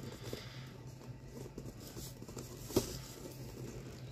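Faint handling noise of a cardboard box being turned over in the hands: soft scattered rubs and taps, with one sharper tap about three-quarters of the way through.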